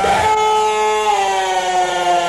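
A breakdown in a 1993 rave DJ mix: the kick drum drops out about a quarter second in, leaving one long siren-like synthesizer tone that slowly slides down in pitch.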